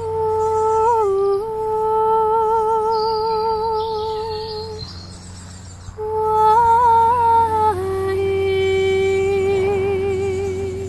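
A woman's wordless light-language singing, hummed on long held notes with a gentle vibrato. There are two phrases with a short pause about halfway, and the second steps down in pitch near its end.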